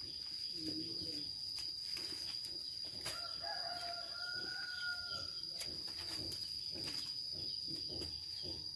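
A rooster crowing once, a call of about two and a half seconds starting about three seconds in, over a steady high-pitched insect drone.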